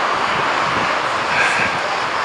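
Steady outdoor background noise, an even hiss with no clear single source.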